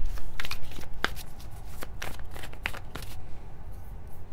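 A deck of tarot cards being shuffled by hand, heard as an irregular run of soft card slaps and clicks.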